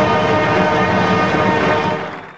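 Marching band's brass section holding a loud, sustained chord.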